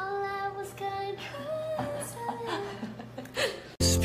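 Women's voices singing a slow melody in long held notes. Just before the end it cuts suddenly to much louder recorded music.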